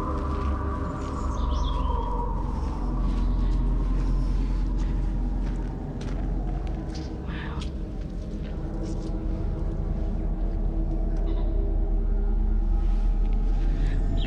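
Background music of sustained held tones, one of them slowly falling in the first few seconds, over a low wind rumble on the microphone.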